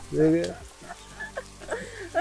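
A short spoken word, then a faint steady hiss of outdoor background noise with faint distant voices.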